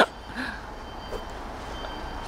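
Steady low rumble of a vehicle engine running, with faint steady high-pitched tones above it.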